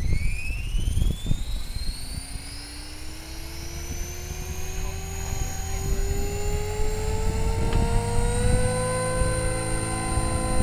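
Align T-Rex 500 electric radio-controlled helicopter spooling up and taking off: the motor and rotor whine climbs steadily in pitch as the head gains speed, then settles to a steady pitch near the end.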